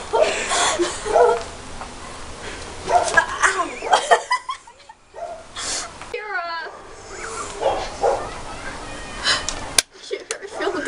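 Indistinct talking voices of several people, with a brief high, wavering squeal about six seconds in.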